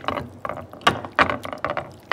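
A plate clattering, rocking and knocking against the plate it stands on as chicken is worked by hand on it: it sits unevenly, so it rattles in an irregular run of knocks, several a second.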